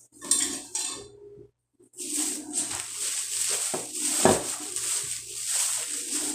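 Plastic shopping bag rustling and crinkling, with light clicks and knocks as items are handled. It is loudest and most continuous from about two seconds in.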